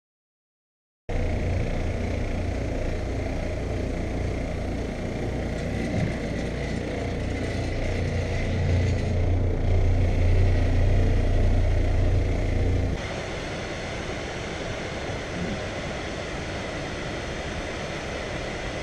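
An electric carpet machine's motor runs with a steady low hum and a thin whine. About 13 seconds in it gives way abruptly to the steady rushing of waterfalls.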